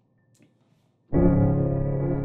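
Sampled upright piano from The Vertical Piano virtual instrument, modelled on a WWII Steinway Victory piano and set to its 'Military Drab' preset. After about a second of near silence, a full chord is struck and held, ringing on and slowly fading.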